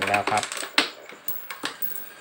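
Scattered sharp clicks of coins knocking against the clear plastic hopper of a homemade coin sorter, the loudest a little under a second in.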